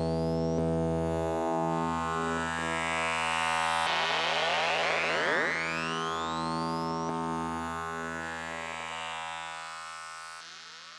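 Doepfer A-100 analog modular synthesizer sounding a sustained low drone rich in harmonics, with a cluster of rising pitch sweeps about halfway through. The sound fades out near the end.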